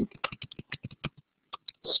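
Typing on a computer keyboard: a quick run of keystrokes that stops about a second in, then two more taps.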